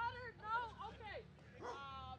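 A dog whining and yipping in short high-pitched calls, the pitch sliding up and down, with one sharp falling whine about a second in.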